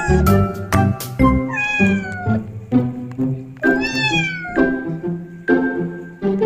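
Newborn kittens mewing twice, high thin cries that fall in pitch, the second one longer, near two and four seconds in, over background music with a steady beat.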